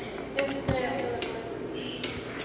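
A serrated kitchen knife clicking against a ceramic plate as vegetables are sliced on it: a few sharp clicks and one dull thump, with voices murmuring in the background.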